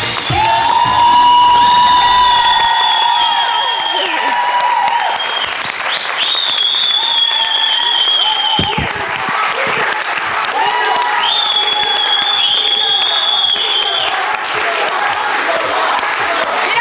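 Studio audience applauding and clapping while a live pop song closes with long, wavering held notes from the singer and band.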